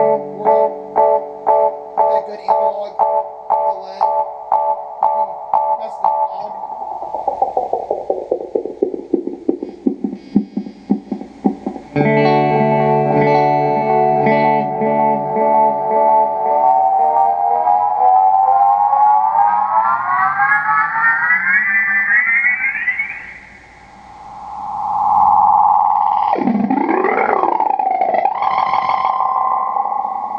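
LMP Wells analog delay pedal, fed by an electric guitar through a Fender combo amp. Its repeats pulse a little over twice a second, then the delay is pushed into self-oscillation. The feedback slides down in pitch, then cuts in as a loud sustained tone that rises steadily in pitch as the knobs are turned, and warbles up and down near the end.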